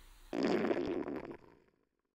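Cartoon stomach-rumble sound effect for a hungry dog: a rough, noisy rumble about a second long that starts a moment in and fades away.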